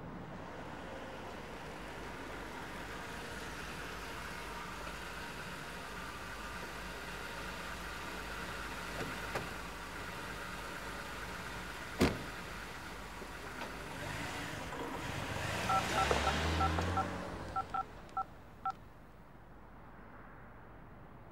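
A car engine runs steadily on a street, with one sharp knock about twelve seconds in like a car door shutting. Near the end comes a swell of passing-car noise and about ten short two-tone beeps of a mobile phone keypad being dialled.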